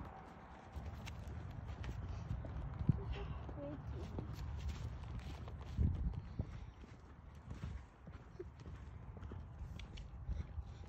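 Hoofbeats of a ridden horse moving over the dirt of a riding arena: a run of dull thuds.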